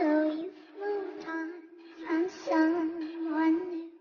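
High-pitched sung vocal of a DJ desa remix track, phrasing a melody in short lines over a steady held low tone, with no beat in this stretch.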